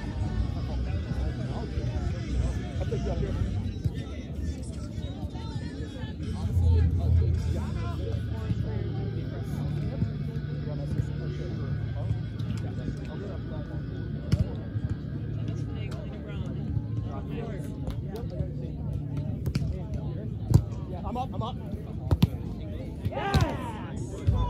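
Outdoor ambience of distant voices and background music over a low rumble, with a few sharp knocks, the loudest about 20 seconds in.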